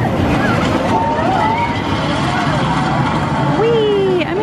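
Seven Dwarfs Mine Train roller coaster cars rumbling past on their steel track, a steady heavy rumble, with riders' voices calling out over it.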